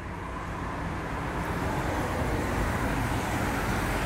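Motor vehicle noise: a steady low engine rumble with road hiss that slowly grows louder.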